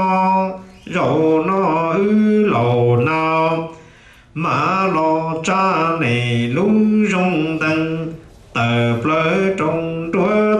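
A man chanting txiv xaiv, the Hmong funeral lament, solo and unaccompanied. He sings in long, held, wavering notes, with short breaths between phrases about a second in, around four seconds, and past eight seconds.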